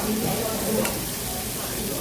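Slices of pork belly sizzling on a hot tabletop grill plate, a steady hiss. Metal tongs turn the meat, with one sharp click of the tongs on the plate just under a second in.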